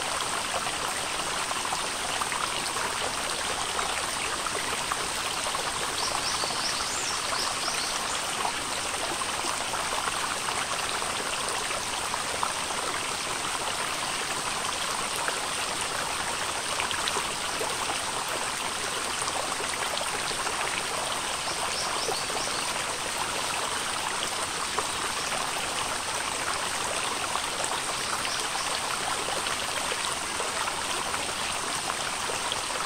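Shallow rocky stream running over stones, a steady, even rush and babble of water.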